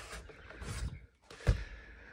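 Faint rustling of hands in a plastic glove box, with one sharp plastic knock about one and a half seconds in.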